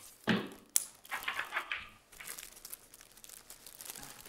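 Faint crinkling and rustling handling noise, with a short burst just after the start and one sharp click about three-quarters of a second in, fading to a quieter crackle.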